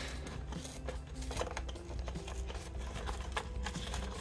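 Clear plastic blister pack being pried and peeled away from its cardboard backing card by hand: faint crinkles and small scattered clicks of the plastic.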